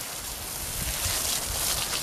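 Steady hiss of water spraying from a garden hose onto soil and mulch, with a low rumble of wind on the microphone.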